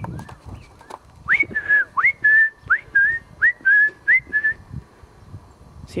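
A bird singing a repeated whistled phrase, a quick upward slur ending on a held note, about five times in a row, then falling quiet.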